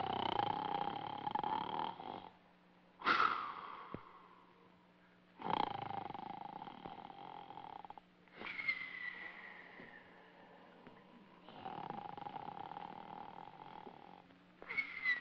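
Exaggerated comic snoring: five long snores in a row, one about every three seconds, each starting abruptly. Some are a low, steady drone and others a high whistle that slowly falls.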